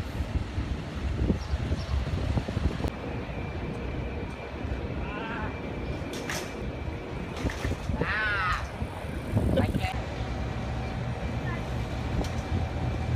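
City street traffic: a steady low rumble of passing vehicles, with a brief high, wavering voice about eight seconds in.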